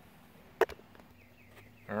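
A single sharp click a little over half a second in, from a small part of the fuel pump assembly being handled and fitted, over quiet background; a man's voice starts right at the end.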